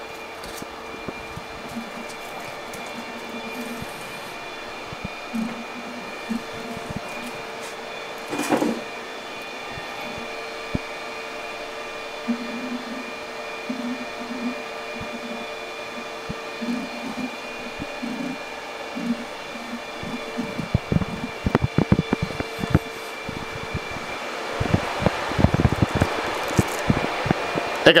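Steady whir and hum of computer cooling fans on running mining rigs, with scattered small clicks and handling noises that come thicker near the end.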